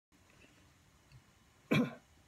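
Faint room tone, then a single short cough near the end.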